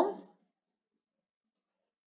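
The tail of a spoken word, then near silence with a single faint click about one and a half seconds in.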